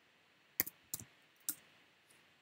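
Three sharp, separate clicks of a computer keyboard and mouse, close together in the middle of otherwise faint room tone.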